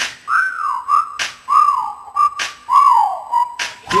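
Whistled melody of a hip-hop song's hook: short phrases of notes that slide down in pitch, over a sharp percussion hit about every second and a quarter, with no bass underneath.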